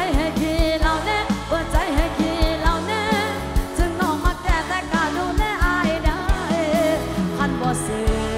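Live Isan mor lam band: a woman sings a winding, wavering melody into a handheld mic over keyboard chords and a fast, steady drum beat.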